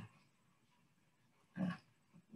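Near silence for about a second and a half, then a man briefly speaks a word or two.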